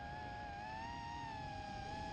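Racing quadcopter motors and propellers whining together, picked up by the drone's onboard camera. Several close pitches sit side by side and waver slightly as the throttle changes, over a low rush of wind and prop wash.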